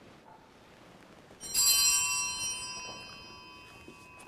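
Altar bell struck once about a second and a half in, ringing with several high, bright tones that fade away over about two seconds.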